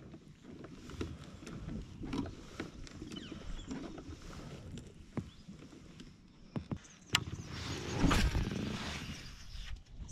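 Scattered knocks, clicks and rustles of handling on a plastic Hobie fishing kayak and its gear on calm water. There is a louder rushing noise about eight seconds in.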